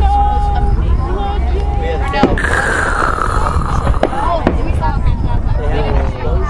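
Fireworks display heard from among the spectators: about three sharp bangs of exploding shells from two seconds in onward, one followed by a falling whistle, over steady crowd chatter.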